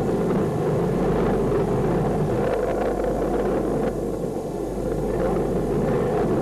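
Steady low rumble of a missile blowing up in the air shortly after launch, with no sharp bang.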